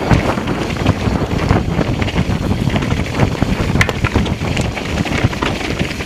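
Wind buffeting a riding mountain bike's camera microphone, with the bike's tyres and frame clattering over loose stones and rough dirt on a fast downhill trail.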